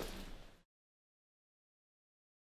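Faint room noise fading out about half a second in, then dead digital silence.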